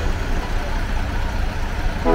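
Coach bus engine running with a steady low rumble as the bus pulls slowly away.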